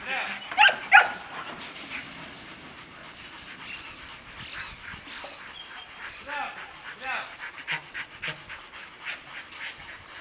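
A Rottweiler panting rapidly with its tongue out, with two loud, short, high-pitched cries falling in pitch about a second in and fainter ones later.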